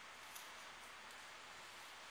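Near silence: a steady hiss of room tone, with one faint click a little under half a second in.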